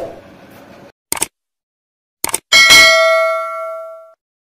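Subscribe-button animation sound effect: a short click about a second in, two quick clicks a little past two seconds, then a bright bell ding that rings on and fades over about a second and a half.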